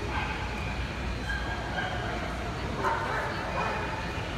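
Dogs barking and yipping in short calls, the loudest about three seconds in, over the chatter of a crowd.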